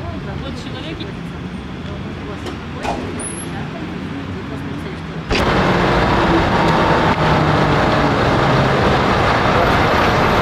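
Road traffic noise, a steady rushing with a low engine hum. It jumps suddenly louder about five seconds in.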